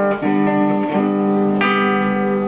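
Acoustic guitar strummed, a new chord struck about every half second and left to ring.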